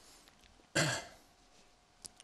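A man clears his throat once, briefly, a little under a second in.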